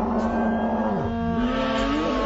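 A long, low, drawn-out cartoon cry, stretched and deepened by slowed-down playback, that falls away about a second in. It gives way to slowed background music.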